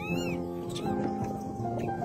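Background music with long held notes. Just after the start, a monkey gives one short, high call that rises and then falls in pitch.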